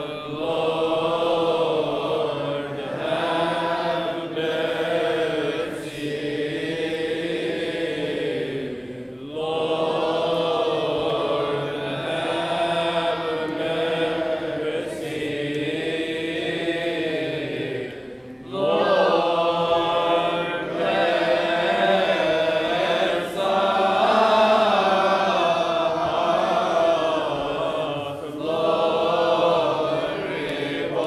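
Coptic Orthodox liturgical chant: voices sing a slow, drawn-out melismatic melody, breaking off twice briefly.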